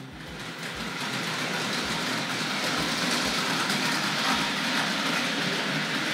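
Hornby Dublo Duchess of Montrose model locomotive running on three-rail 00 track, its motor and wheels making a steady rattling run with irregular clicks from the track. The sound builds over the first second as power comes on, then holds steady.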